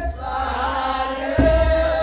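Ethiopian Orthodox liturgical chant (aqwaqwam): voices holding a slow, winding chanted line. About one and a half seconds in comes a deep drum stroke together with a shake of sistrum jingles.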